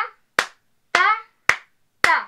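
Hand claps keeping a steady pulse, about one every half second, with a short vocal syllable on every other clap, counting out the beat with the snare on 2 and 4.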